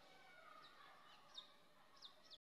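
Near silence: faint room tone with a few faint, high, quick downward-sliding bird chirps, one a little louder about one and a half seconds in.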